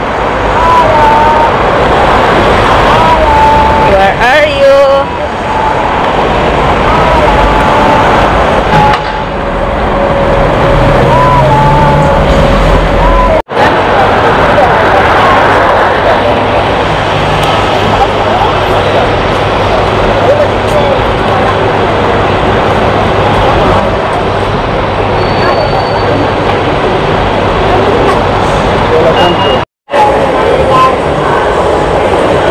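City street traffic noise from cars on a busy road, with people's voices mixed in. The sound drops out briefly about halfway and again just before the end.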